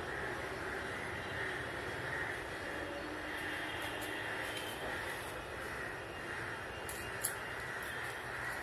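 Steady background noise, a low rumble with hiss and a softly pulsing high band, broken by one sharp click about seven seconds in.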